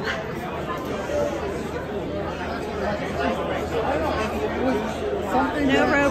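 Crowd chatter in a busy indoor hall: many people talking at once, with one nearer voice toward the end.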